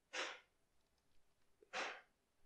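A person breathing close to the microphone: two short breaths, one just after the start and one near the end, with faint keyboard clicks between them.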